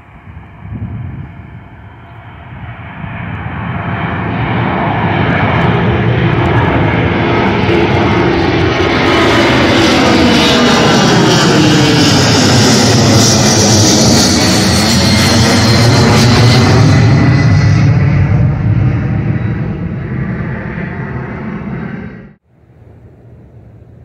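Delta twin-engine jet airliner climbing out and flying overhead: the engine noise builds over the first few seconds, stays loud while the plane passes over with a sweeping, shifting tone, then begins to fade as it moves away.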